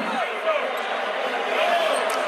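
Basketball being dribbled on a hardwood court under a steady arena hubbub, with faint voices in it.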